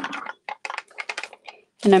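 A quick run of light clicks and clatters as a tray of embossing tools (tweezers, brush, bag of embossing powder) is handled and set down on a craft table.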